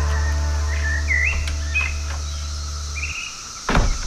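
Birds chirping in short rising and falling calls over a held low bass note that cuts off about three seconds in, followed by a brief thump near the end.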